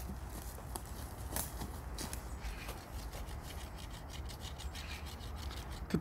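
A wooden stick rubbing and scraping against wood, with a few faint knocks.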